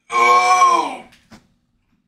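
A drawn-out vocal moan lasting about a second, held on one pitch and then trailing off, followed by a faint click.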